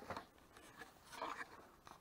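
Faint rustle of clothing and gear handled close to the microphone, with a few sharp clicks at the start.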